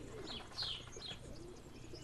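Feral pigeons cooing faintly, a few soft low coos with some short higher chirps.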